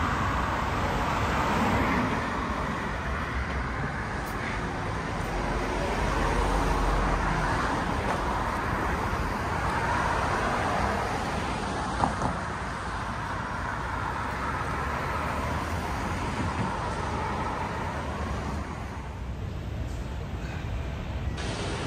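City street traffic: cars driving past in slow swells of tyre and engine noise, with one sharp click about twelve seconds in.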